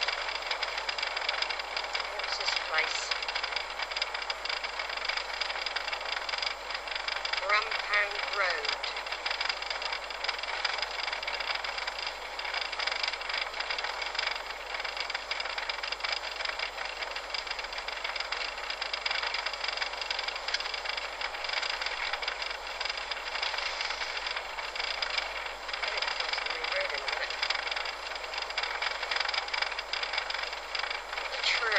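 Steady road and wind noise inside a moving car, an even hiss throughout, with a brief spoken phrase about eight seconds in.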